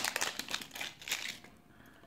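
Thin clear plastic packaging sleeve crinkling as it is slid off a coiled earphone cable, with soft handling rustles; it dies away about a second and a half in.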